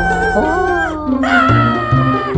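Cartoon background music with a high, drawn-out vocal cry from an animated character, twice: the first falls in pitch at its end about a second in, the second follows shortly after.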